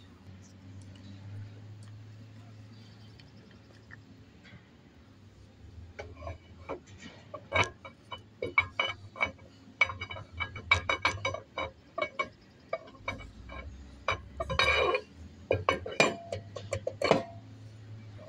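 Steel axle shaft splines being worked into the side gear of a G73 differential carrier in a test fit, giving a string of sharp metal clinks and clunks from about six seconds in.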